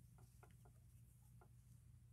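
Near silence: a low steady hum with a few faint, soft clicks from a crochet hook working yarn in double crochet stitches.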